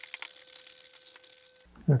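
Rough-grit sandpaper on a sanding block rasping against the edge of a wooden centering ring as the edge is sanded flat, a steady dry scratching hiss that stops shortly before the end.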